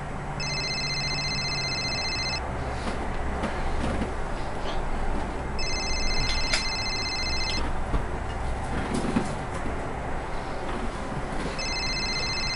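A mobile phone's electronic ringtone ringing three times, each ring about two seconds long and a few seconds apart, the third cut short. A steady low hum and some rustling lie underneath.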